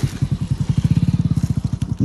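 A small engine running steadily nearby, with a fast, even beat of low pulses.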